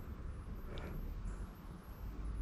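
Low steady rumble of wind on the microphone over faint outdoor background sound, with one faint tick a little under a second in.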